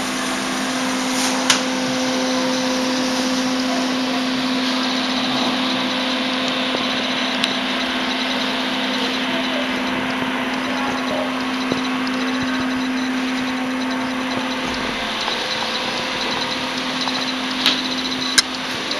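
A loud, steady mechanical whir with a constant low hum, like a fan or small motor running, broken by a few brief clicks. The hum weakens about three seconds before the end.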